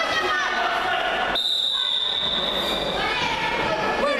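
A referee's whistle blown in one long, steady high blast of about a second and a half, starting about a third of the way in, over a background of crowd chatter.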